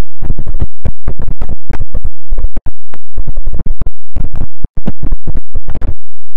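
Heavily distorted, effects-processed audio from a 'G Major' meme effects edit, chopped into rapid stuttering bursts several times a second and clipping at full volume.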